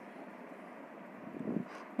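Vadas deep-frying in hot oil in a kadai, a faint steady sizzle.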